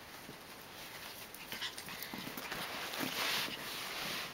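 A Prague ratter puppy play-fighting with a person's hands on carpet: scuffling and small puppy noises, with a louder rushing noise a little after three seconds in.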